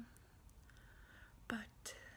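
Quiet room tone during a pause in a woman's talk, broken about three-quarters of the way through by a short, soft sound of her voice and a brief hiss.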